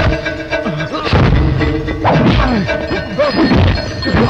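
Movie fight-scene punch and impact sound effects, a series of heavy blows about a second apart, over dramatic background music.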